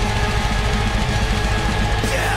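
Live death metal band playing loud: distorted guitars, crashing cymbals and a fast, even drum beat.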